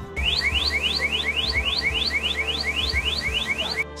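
Jigger dyeing machine's end-of-process alarm sounding, a rapid string of rising tones, about four a second, signalling that the dyeing program has finished.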